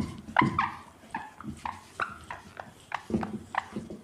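Whiteboard being wiped, the eraser squeaking against the board in short strokes about twice a second.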